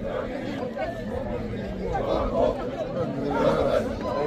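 Several people's voices talking over one another: overlapping chatter.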